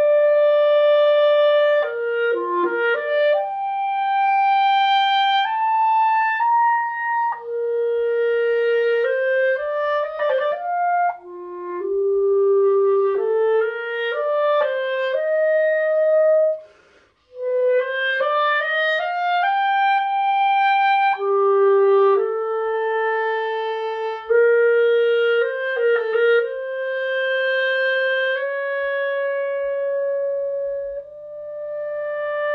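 Solo clarinet played with a Vandoren Masters CL5 mouthpiece and a hard reed: a flowing melodic line of held and moving notes, broken by a short breath about seventeen seconds in.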